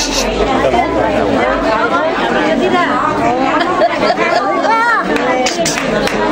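Several people talking at once: overlapping chatter of a small group.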